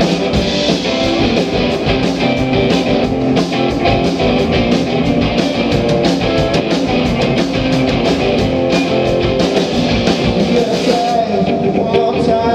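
Live rock performance by a guitar-and-drums duo: an electric guitar strummed hard over a drum kit beating a steady rhythm, at a loud, even level.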